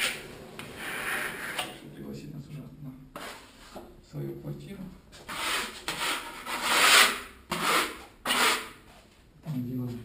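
A steel plastering trowel scraping across Venetian plaster on a wall, working the material in a series of sweeping strokes. The strokes come a little over a second long each, with the loudest about two-thirds of the way through.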